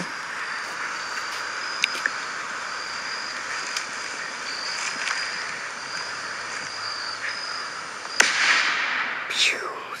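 A single rifle shot from a scoped Creedmoor rifle, played back through a phone's speaker, comes about eight seconds in after several seconds of steady outdoor hiss with a faint high tone. The shot sounds small, like a Daisy Red Ryder BB gun.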